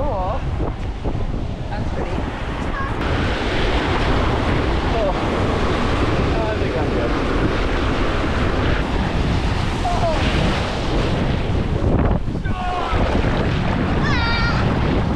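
Small waves breaking and washing in over a shallow sandy beach, with wind rumbling on the microphone. The surf noise gets louder about three seconds in.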